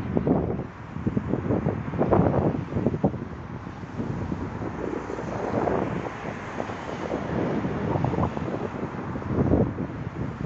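Wind buffeting a phone's microphone in irregular gusts, a rough low rumble that swells and dips.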